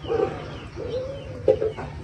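Chickens clucking: a short call, one longer drawn-out call near the middle, then a few quick clucks.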